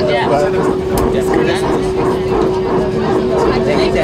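Steady cabin hum of an Airbus A319 taxiing after landing, a constant drone from its engines and air systems, with passengers talking nearby.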